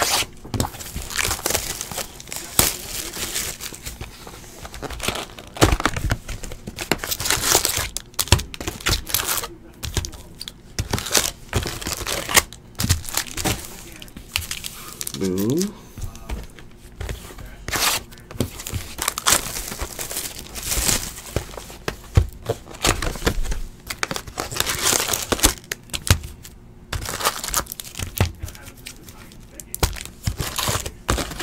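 A sealed baseball card hobby box being torn open and its foil card packs handled: repeated tearing and crinkling of plastic wrapping and cardboard, coming in quick irregular strokes.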